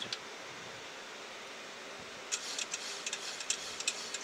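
Steady hiss of airflow and air conditioning on a Boeing 737NG flight deck on final approach with the gear down. Faint, irregular clicks join in about halfway through.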